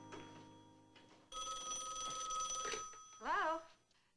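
A rotary desk telephone's bell ringing once, for about a second and a half, starting about a second in. Near the end a woman says a short word as the call is answered.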